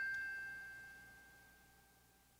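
A single struck chime note ringing out, its clear bell-like tone dying away over about two seconds.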